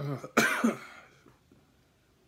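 A man gives a short voiced grunt and then one sharp, loud cough within the first second, a reaction to the burn of Coca-Cola spiked with Carolina Reaper, Tabasco and capsaicin extract.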